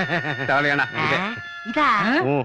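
Men laughing, a quick run of repeated ha-ha-ha sounds, followed by a voice near the end.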